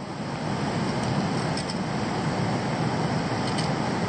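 Steady rushing of water pouring over a weir, a continuous even roar that swells over the first second and then holds level.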